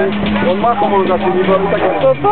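Nearby voices talking over a steady low hum of a car engine idling.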